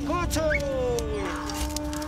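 Voices calling out in long sliding cries, one a shout of "wauw", over a steady held note. Sharp snaps of sickles cutting quinoa stalks come through now and then.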